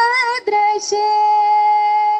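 Female voices singing a devotional bhajan: a short wavering phrase, then one long held note.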